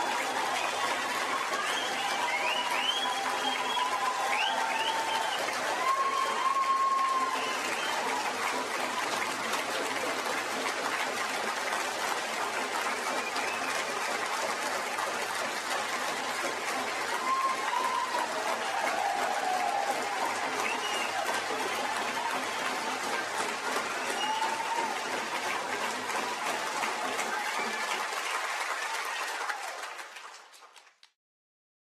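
A large audience applauding in a long, steady ovation, with voices cheering and calling out over the clapping.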